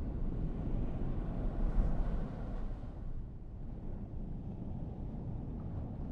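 A low, steady rumble with no clear pitch, like an ambient sound-design drone, growing quieter after about three seconds.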